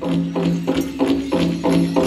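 Powwow drum struck in unison by a drum group, keeping a steady beat of about three strokes a second, each stroke ringing on, as the chicken dance song gets under way.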